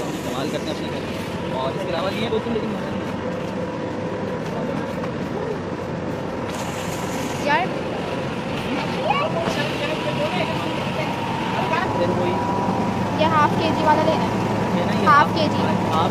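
Shopping trolley rolling over a tiled supermarket floor, a steady low rumble under a constant hum, with shoppers' voices chattering around it and growing busier in the second half.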